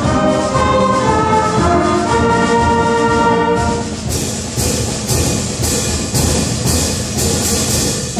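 Middle school concert band playing: held brass and woodwind chords. About halfway through, the held chords drop away and the music turns to sharp percussion strikes about twice a second.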